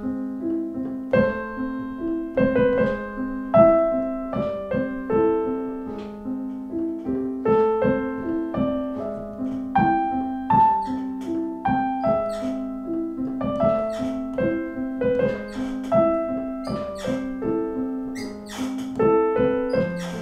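Piano playing a steady, flowing broken-chord accompaniment in A minor, its bass note shifting under the chord, with right-hand notes moving over it.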